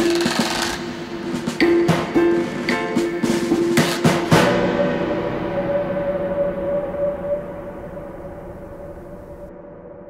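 Sampled orchestral percussion from the VSCO 2 Community Edition library playing a run of drum hits and snare-like rolls over a held low tone. About four seconds in, a final struck hit leaves one long ringing tone in a heavy reverb that slowly fades out.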